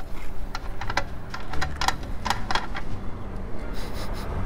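A series of light, irregular metallic clicks and taps as the filler cap is worked off a custom aluminium motorcycle fuel tank.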